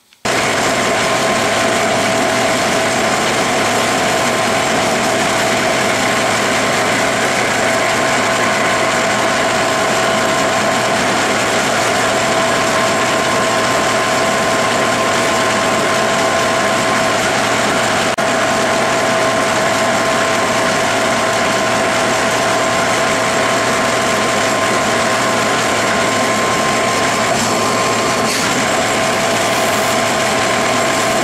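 Metal lathe running steadily under power feed while a pinch-type knurling tool's rollers press a diamond knurl into a spinning free-machining steel rod lubricated with cutting oil. A loud, even mechanical hiss with two steady held tones, cutting in abruptly at the start.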